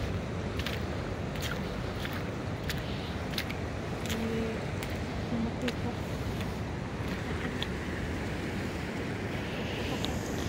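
Steady rushing noise of a fast-flowing river mixed with wind buffeting the microphone. Scattered light clicks run through it, and a brief low hum comes about four seconds in.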